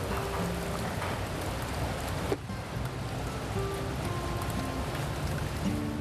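Soft background music of long held notes over a steady hiss like rain. The sound drops out for an instant a little over two seconds in.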